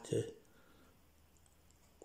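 Near silence after a single spoken word, with a few faint small clicks.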